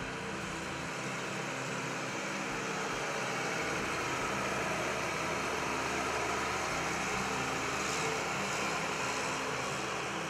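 Diesel engine of a 2009 New Holland CR9070 combine running steadily as the machine drives past. It grows a little louder through the first half and eases off slightly near the end.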